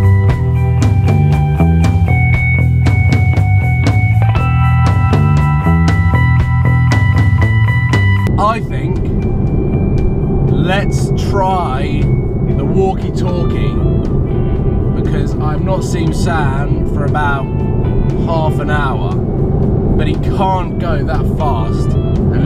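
Background music with a steady drum beat, which cuts off about eight seconds in. Then the steady low rumble of a Mercedes-AMG GT S's twin-turbo V8 and road noise inside the cabin at motorway cruising speed, with short snatches of voice.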